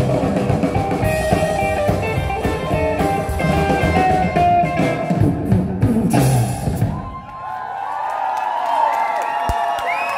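Live rockabilly trio playing an instrumental passage on upright double bass, electric guitar and drums, ending together about seven seconds in. Then the audience cheers and whoops.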